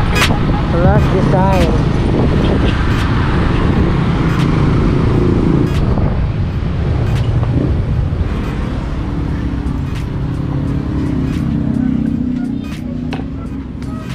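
Motorcycle ride heard from an onboard camera: the engine runs under heavy wind and road noise, which eases off near the end as the bike slows and pulls up.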